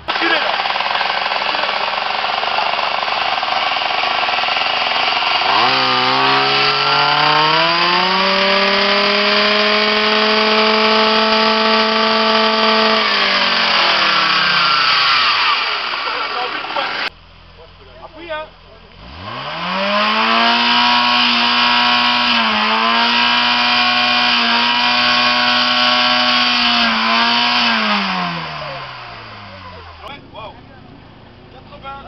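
Loud exhausts of modified vehicles, each revved up and held at steady high revs for a sound-level meter reading. The first engine climbs, holds for about seven seconds and falls back. After a brief break, a second engine climbs, holds for about eight seconds and drops away.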